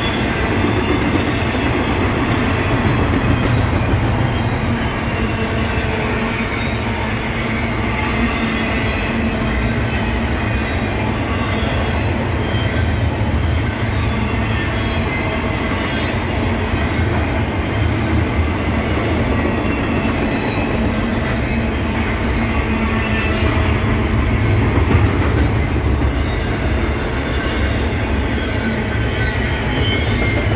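Double-stack intermodal freight train cars rolling steadily past: a continuous rumble of steel wheels on rail, with a faint, wavering high squeal of wheels against the rail running through it.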